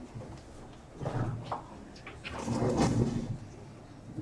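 People moving about in a meeting room, with two louder scraping, shuffling noises like chairs moved on the floor: one about a second in and a longer, louder one near the three-second mark.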